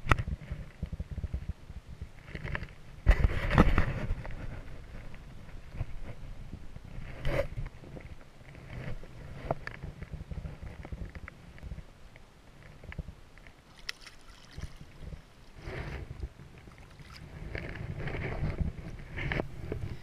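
Wind rumbling on the microphone at the water's edge, with irregular splashing and rustling as a landing net holding a trout is handled and dipped in the water; the loudest burst comes about three seconds in.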